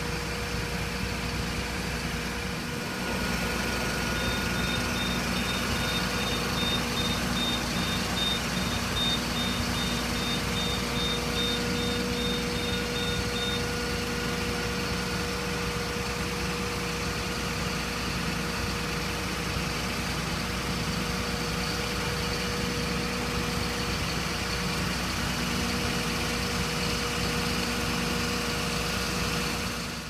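Fire truck turntable ladder in operation: the truck's engine runs steadily with a constant hum while the ladder is moved. A high-pitched warning beep repeats about twice a second from about four seconds in until about thirteen seconds.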